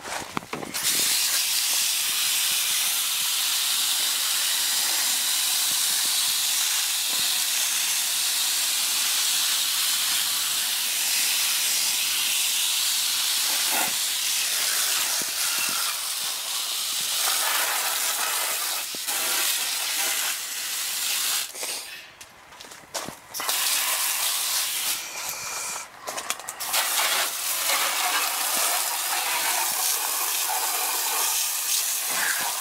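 Garden hose spray nozzle spraying water to rinse out an air-conditioner condensing unit, with no coil cleaner used: a steady hiss that stops briefly twice near the end.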